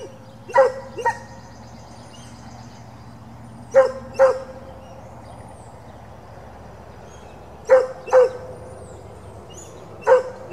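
A dog barking in pairs: two sharp barks about half a second apart, with a pair coming roughly every four seconds, three pairs in all.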